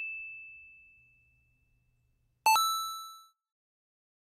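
Ding sound effects: a single high ding fades out, then about two and a half seconds in a brighter bell-like chime with several ringing tones strikes once and dies away within a second.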